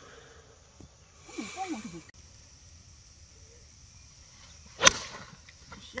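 A golf club strikes a ball on a full swing, giving one sharp crack about five seconds in.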